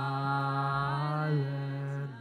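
A low voice singing one long held note without clear words, wavering slightly and dipping in pitch near the end, then giving way to a softer note.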